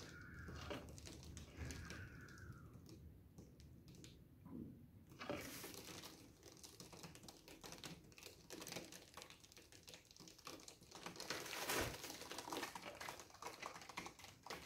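Faint, irregular clicking, rattling and rustling of hand handling: plastic spring clamps being worked off paint-covered wooden art panels and a panel being lifted, starting about five seconds in. Before that it is almost quiet, with two faint gliding tones.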